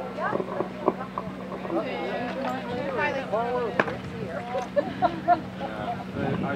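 Voices talking, quieter than the commentary either side, over a steady low hum. There are a couple of sharp knocks, about a second in and near the four-second mark.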